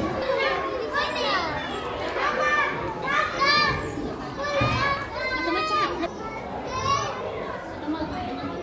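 Young children's high-pitched voices, talking and calling out again and again, over the murmur of other visitors in a large indoor hall.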